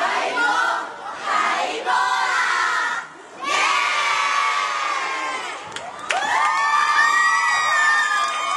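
A cheerleading squad of young girls shouting in unison in short rhythmic bursts. After a brief pause about three seconds in, they break into long, high-pitched group cheering and screaming.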